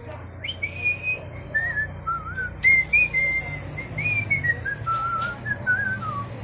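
A tune whistled in clear single notes, stepping up and down with short glides between them, over a steady low hum, with a few sharp clicks around the middle.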